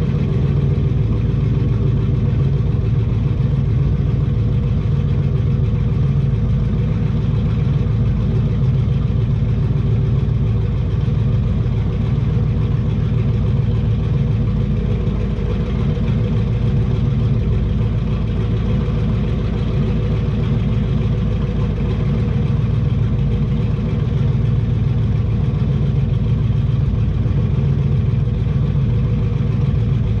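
Twin-turbo big-block Chevy V8 idling steadily, heard from inside the truck's cab, with no revving.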